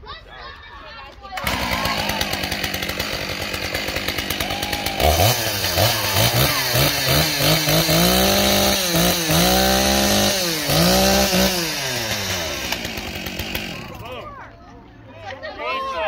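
Large gas chainsaw starting up about a second and a half in and running at idle, then revved several times, its pitch climbing and falling with each rev. It settles back down and shuts off near the end.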